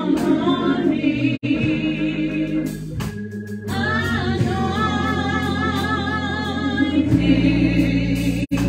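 A woman singing gospel through a microphone, her voice wavering with vibrato, over an organ holding low notes. The voice pauses briefly near the middle and comes back in, and the sound drops out for an instant about a second and a half in.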